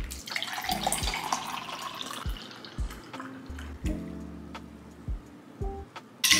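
Shaken iced coffee poured from a cocktail shaker through its strainer top into a glass, the liquid splashing most strongly in the first couple of seconds and thinning to a trickle, over background music with a steady beat.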